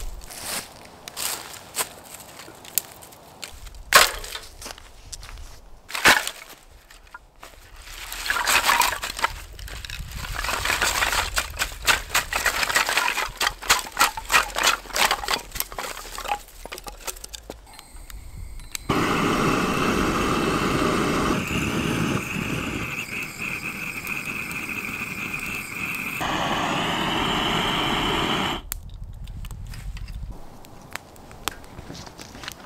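Dry twigs and branches being cut and snapped, a series of sharp cracks. Then rustling and crunching in dry leaves and pine needles while split firewood is tipped onto the ground. The loudest part comes after that: a steady hiss lasting about ten seconds that changes pitch twice and cuts off suddenly.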